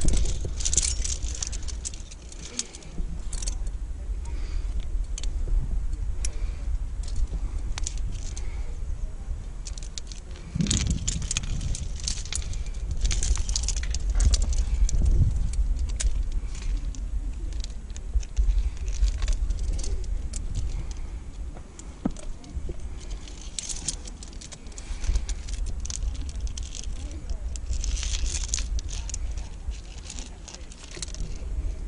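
Climbing hardware on the harness rack (aluminium carabiners, quickdraws and protection) clinking and jingling in scattered bursts as the climber moves, over a steady low rumble.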